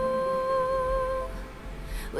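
A slow song with a voice holding one long, steady sung note that fades out about two-thirds of the way through.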